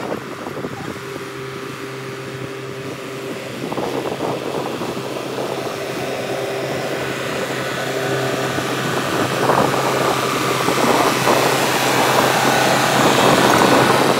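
Farm tractor's diesel engine running steadily as the tractor drives closer, growing louder toward the end as it passes close by.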